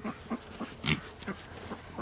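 Kunekune pig grunting, about six short grunts over two seconds, the loudest about a second in.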